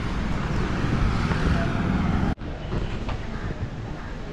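Street traffic noise: a steady hum of passing vehicles that breaks off abruptly about two and a half seconds in, followed by quieter street noise.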